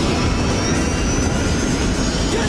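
A film sound effect: the time tunnel's loud, steady, jet-engine-like roar, with a faint high whine that rises slowly.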